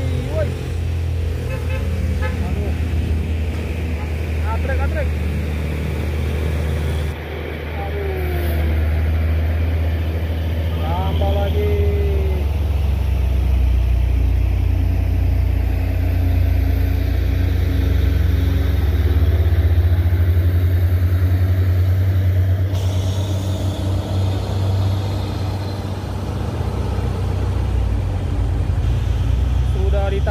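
Heavy diesel truck engines running with a steady low rumble, swelling louder through the middle.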